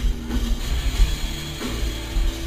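A heavy metal band playing live, with electric guitar, drums and sustained low bass notes.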